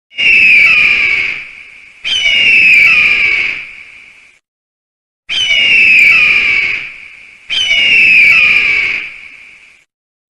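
Eagle screech sound effect: four long, falling screams in two pairs, with a pause of about a second between the pairs.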